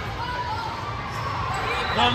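Volleyball bouncing a few times on a hardwood gym floor, over the hubbub of players and spectators talking in a large, echoing hall.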